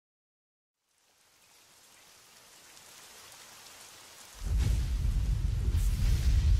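About a second of silence, then a soft hiss fades in, and some four seconds in a loud, deep rumble starts suddenly, like rain and thunder.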